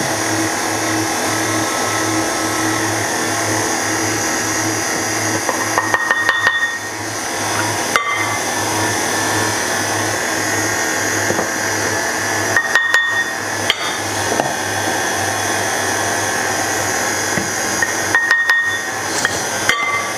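Electric stand mixer running steadily with an even low pulsing about twice a second as it beats rice-flour cookie dough, flour being added a scoop at a time. A few sharp clinks scattered through it.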